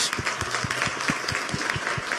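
Audience applauding: many people clapping steadily.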